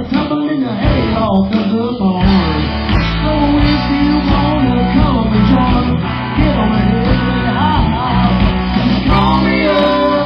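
A live rock band playing: distorted electric guitars, bass guitar and drums at a steady beat.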